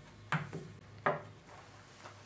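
Two short wooden knocks about three-quarters of a second apart: a homemade wooden jack plane and a wooden-handled hammer being set down on a table saw's metal top.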